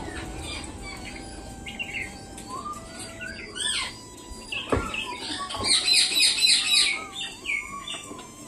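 Birds chirping and calling in short high notes, with a dense run of rapid high chirps a little over halfway through. A single sharp knock sounds about halfway.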